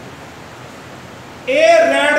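Steady hiss of background room noise, then about one and a half seconds in a man's voice starts speaking loudly.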